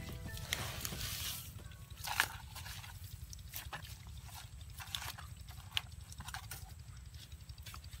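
Faint background music with a low, even pulse, over a handful of sharp clicks and rustles as hands pull at grass and mud at a puddle's edge, the loudest click about two seconds in.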